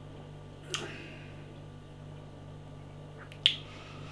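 Short mouth clicks and lip smacks while tasting beer: one about a second in and a louder pair near the end, over a steady low hum in a quiet room.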